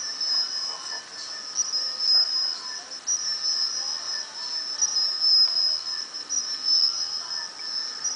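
Steady high-pitched whistling tone with fainter steady tones beneath it: audio feedback between the iPod touch playing the GoPro's live-preview sound and the microphones.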